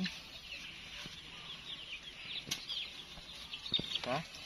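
Birds chirping in the background, many short high chirps. There is light handling noise and one sharp click about halfway through.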